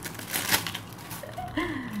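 Thin plastic bag crinkling and rustling in the hands as a bracelet is worked out of it, loudest in the first half-second, with a woman's short laugh near the end.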